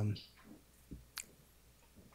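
A brief spoken 'um', then a quiet room with a few faint clicks, the sharpest a little over a second in.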